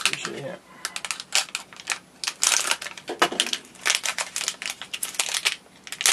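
Crinkling and crackling of a metallised foil anti-static bag being handled and opened, an irregular run of sharp crackles.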